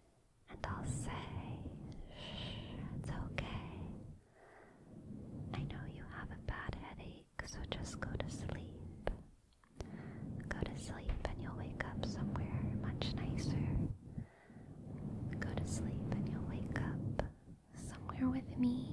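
Soft close-microphone ASMR sounds, whisper-like rustling and touching, in about five stretches of two to four seconds, each ending in a short pause.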